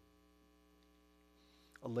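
Faint, steady electrical mains hum: a stack of evenly spaced steady tones under the quiet. A man's voice starts speaking near the end.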